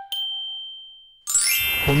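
A single high, bell-like ding closing a TV programme's intro jingle, ringing clear and fading away over about a second. Near the end it cuts to outdoor background noise and a man starting to speak.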